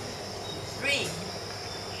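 A brief rising-and-falling call from a child's voice about a second in, over low room noise with a steady high thin tone.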